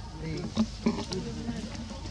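An insect buzzing close by in a fairly steady tone, over faint voices, with two sharp clicks about half a second and just under a second in.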